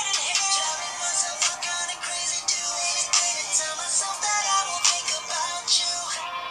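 An R&B song playing: a male lead vocal sings over a drum beat, with almost no bass.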